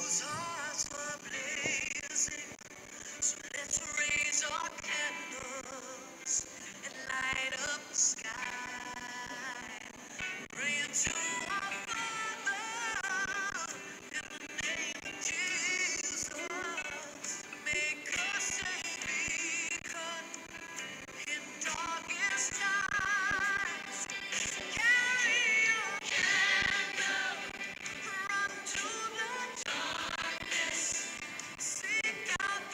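A song sung by a solo voice over musical accompaniment, the voice wavering with vibrato on held notes.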